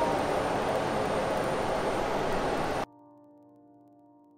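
Steady rushing noise of a bullet train standing at a snowy platform, cut off abruptly about three-quarters of the way through. Faint sustained music notes follow, slowly fading.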